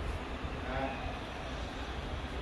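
A steady low background rumble, with a brief murmured voice about three quarters of a second in.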